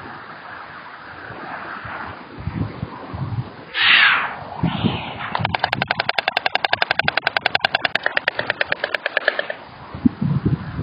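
White stork clattering its bill with its head thrown back: a fast, even run of sharp clacks, about ten a second, lasting about four seconds in the second half. Before it, microphone wind rumble and a brief loud rush of noise about four seconds in.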